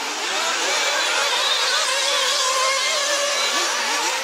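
Nitro engines of 1/8-scale RC off-road buggies running at high revs, a high buzz whose pitch rises and falls repeatedly as the cars accelerate and back off through the corners.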